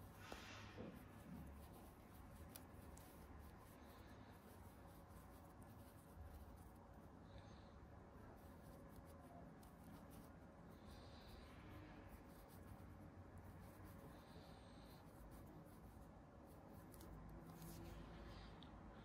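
Near silence, with faint soft rustling and scraping of acrylic yarn drawn through a crochet hook a few times.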